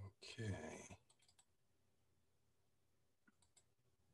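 A man says "okay", then near silence broken by faint computer-mouse clicks: a quick cluster about a second in and another near the end.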